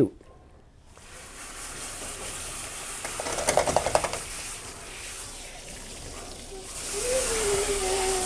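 Water spraying from a hand-held hose sprayer onto a wet dog in a grooming tub, starting about a second in and growing louder and brighter near the end. Around the middle there is a short fast rattle as the dog shakes its head.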